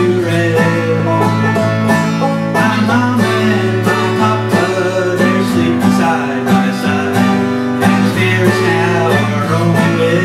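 Banjo and acoustic guitar playing a bluegrass instrumental together: rapid plucked banjo notes over the guitar's chords and bass runs, with no singing.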